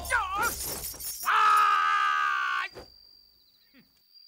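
Fight-scene sound: a short shout with a bending pitch over crashing, breaking noise, then a loud held yell of about a second and a half that cuts off abruptly. A faint, thin, high ringing tone is left after it.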